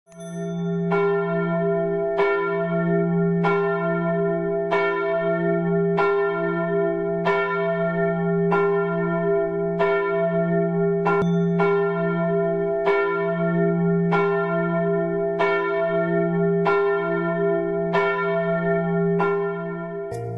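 A single church bell tolling steadily, one stroke about every 1.3 seconds, each strike ringing on into the next.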